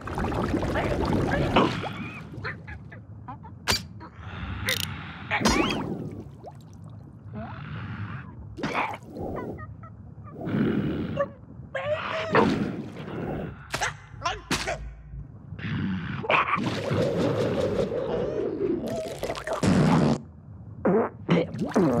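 Cartoon soundtrack of wordless character noises, squawks, grunts and yelps, from a cartoon ostrich and crocodile, mixed with sudden slapstick sound effects. A longer, drawn-out vocal sound runs through the last few seconds.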